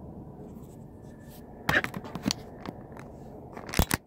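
Handling noise from a smartphone being moved and gripped in the hand: a few sharp clicks and knocks, the loudest near the end, over a steady low rumble.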